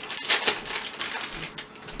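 A plastic-wrapped packet crinkling and rattling as it is handled and opened, a quick irregular run of clicks and rustles. The small bells on the cat-ear headband inside are jingling.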